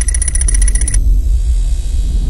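Sci-fi computer-interface sound effects: a deep steady rumble under a rapid chatter of high electronic beeps and ticks. The chatter stops about a second in, leaving a hiss over the rumble.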